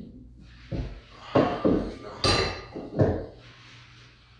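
A crystal trophy and its base knocking and scraping against a shelf as it is worked into a tight custom-made slot: about five separate knocks, the sharpest a glassy clink about two seconds in.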